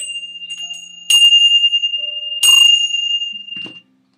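Small bells struck three times, about a second apart, to open morning prayers. Each strike rings with one clear, high tone, and the second and third are the loudest. The ringing fades out just before the end.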